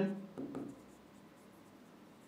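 Faint scratching and tapping of a stylus writing words by hand on an interactive smartboard screen.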